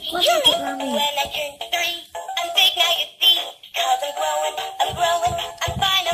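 Toy singing birthday cake playing an electronic tune through its small speaker, set off by a pressed button while its candle lights come on. It opens with gliding, swooping tones, then settles into a melody of short notes.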